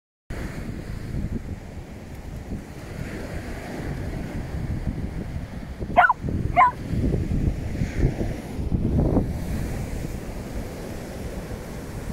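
Dogs at play on the beach, one giving two short, high barks in quick succession about halfway through, over a steady low rush of surf.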